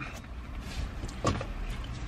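Low steady rumble inside a car cabin, with a brief faint sound about a second in.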